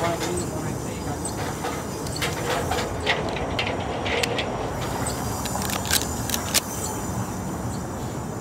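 City street ambience: a steady wash of traffic noise with a few short, sharp clicks or taps over it.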